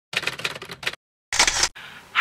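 Edited intro sound effect: a quick run of clicks, about a dozen in under a second, a brief silent gap, then one short burst of noise.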